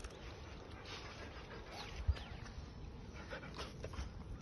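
A dog panting faintly at close range, with a few soft ticks and one low thump about two seconds in.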